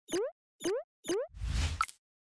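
Cartoon sound effects on an animated logo: three short blips, each rising quickly in pitch, about half a second apart, then a rushing noise with a deep rumble and a brief high ping, cut off suddenly at the end.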